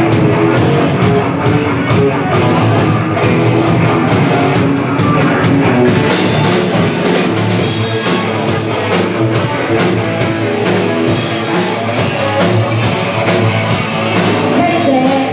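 Rock band playing live: electric guitar over a drum kit keeping a steady beat. About six seconds in, the cymbals come in and the sound gets brighter.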